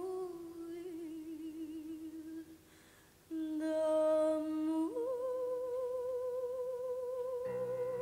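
A woman's solo voice singing a wordless, mostly unaccompanied melody in long held notes with vibrato. There is a brief break about three seconds in, then the voice rises to one long high note held from about five seconds in. Soft low accompaniment comes in near the end.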